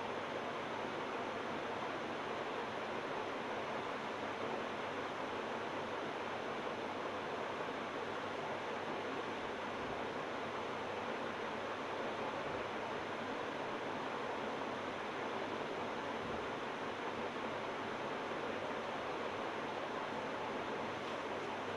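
A steady hiss of background noise with no distinct events.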